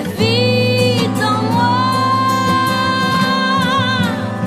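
Christian praise song: a voice holds a long high note over steady instrumental backing. The note starts about a second in and wavers near its end.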